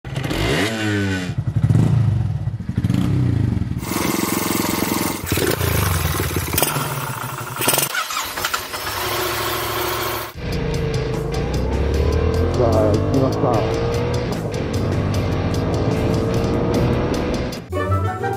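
Motorcycle engine running and revving under acceleration. About ten seconds in it settles into a steady note that slowly rises in pitch, as under a long pull in gear.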